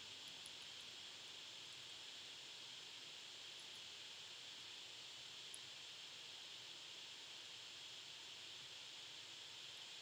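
Near silence: a steady, even hiss of the recording's noise floor, with a couple of very faint tiny ticks.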